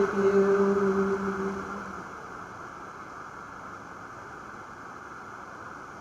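The closing held note of a sung hymn dies away over about two seconds, leaving a steady background hiss.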